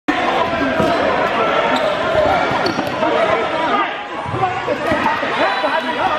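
Foam dodgeballs bouncing and knocking on a hardwood gym floor during dodgeball play, with players' voices calling out over it in a large, echoing hall.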